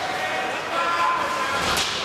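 Ice hockey game in an echoing rink hall: indistinct voices calling out across the ice, with one sharp crack of a hit near the end.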